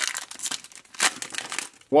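Foil booster pack wrapper of Pokémon trading cards being torn open and crinkled by hand: a run of crackling rustles, the sharpest about a second in.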